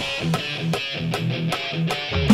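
Hard rock song in a sparse passage: electric guitar chords with light drum or cymbal ticks about three times a second, and no bass or kick drum. The drums are played on an electronic kit.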